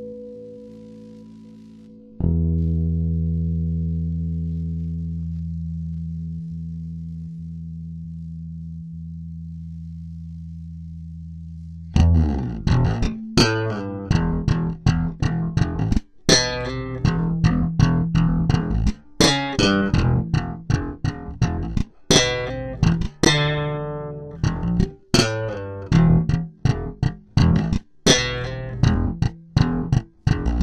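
Four-string electric bass playing a guitar riff transposed for bass. One long low note is held and slowly fades for about ten seconds, then a steady run of quick plucked notes begins about twelve seconds in.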